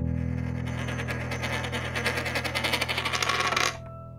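Outro jingle: a held low chord under a bright, shimmering swell that builds and cuts off abruptly near the end, leaving the chord sounding.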